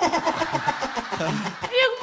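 Speech only: people talking, with voices overlapping.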